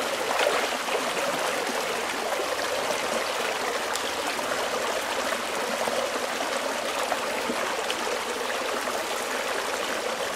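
A shallow stream running over rocks in a steady rush of water, with a small cascade close by.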